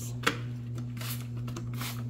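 Trigger spray bottle of Clorox bleach cleaner: a sharp click just after the start, then two short hissing sprays about a second apart, over a steady low hum.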